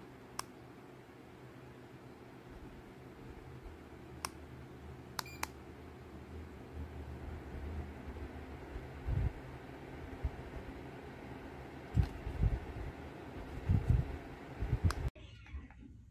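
Orison low-profile bladeless ceiling fan running with a steady low hum. There are a few short, sharp clicks in the first six seconds and several low bumps in the last few seconds, and the sound cuts off suddenly about a second before the end.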